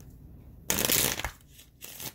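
Tarot cards being shuffled: a loud rush of card noise about half a second long, a little under a second in, then a shorter, fainter flutter near the end.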